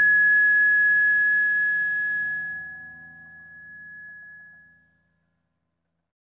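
A final guitar chord ringing out and fading away, with one high, pure, bell-like tone standing out above the rest. It dies out about five seconds in.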